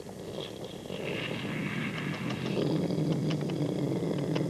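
A low, rasping, growl-like rumble, most likely a person's voice making a sound effect, that grows louder after about a second and then holds.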